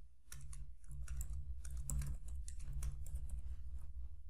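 Computer keyboard typing: a quick, uneven run of key clicks as a line of code is typed, over a faint steady low hum.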